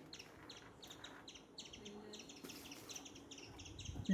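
Faint background birdsong: a small bird chirping repeatedly, about three short chirps a second.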